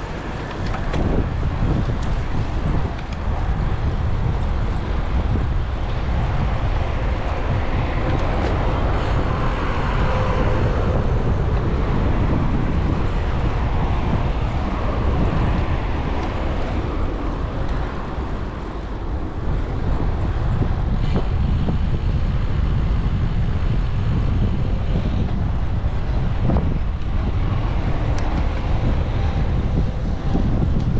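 Wind rushing over the microphone of a bicycle-mounted action camera while riding, mixed with the noise of road traffic, which swells for several seconds partway through.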